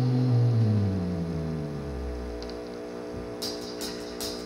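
Electric guitar and bass through amplifiers: a held low note slides down in pitch and dies away, leaving a steady amp hum. Near the end, quick light hi-hat taps start.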